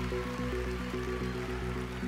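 Audience applauding over background music that has a quick, steady pulse.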